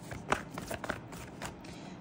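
A deck of tarot cards being shuffled by hand, the cards clicking against each other in a string of short, irregular clicks.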